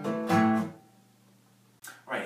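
Acoustic guitar playing the last notes of a flatpicked exercise with slurs. Two picked notes ring out and die away within the first second, leaving quiet. A short click comes near the end.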